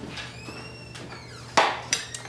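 Faint ringing tones in the first second, then a single sharp knock about one and a half seconds in, the loudest sound, followed by a lighter click.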